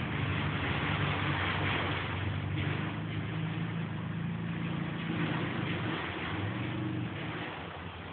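Quad (ATV) engine running steadily, its pitch wavering slightly, becoming quieter near the end.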